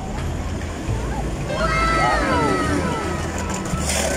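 Steady low outdoor rumble, with a person's drawn-out voice sliding down in pitch about halfway through.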